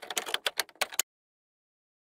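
A typing sound effect: about ten quick, irregular clicks over roughly a second, stopping about a second in, as letters pop up one by one in a title animation.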